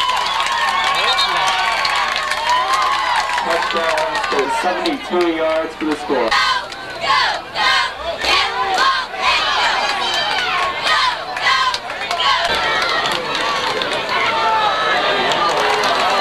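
A crowd at a football game cheering and shouting, many voices at once. In the middle there is a stretch of repeated shouts, about two a second.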